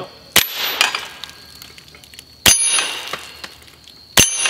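Two pistol shots about two seconds apart, each followed at once by the ringing of a struck steel target.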